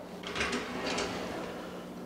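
A bathroom vanity drawer sliding open, a soft scraping rush with faint swells about half a second and a second in.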